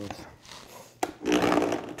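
Countertop blender pressed shut by hand, then switched on about a second in, running noisily as it grinds hard chunks of tamarind candy with chipotle chiles and garlic.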